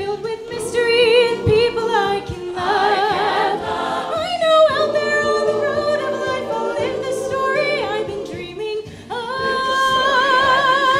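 Mixed-voice choir singing in harmony behind a solo singer, the voices wavering with vibrato. Near the end the sound dips briefly, then the choir comes back in on long held chords.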